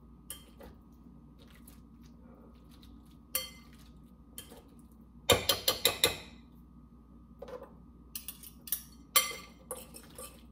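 Wire potato masher mashing chickpeas in a glass bowl, clinking and knocking against the glass: a few scattered taps, then a quick run of loud clinks about five seconds in, and more taps near the end.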